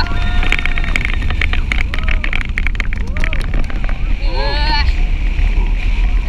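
Manta flying roller coaster in motion: wind buffeting the onboard microphone over a steady rumble and rattle from the train on the track. About four seconds in, a rider's voice cries out briefly.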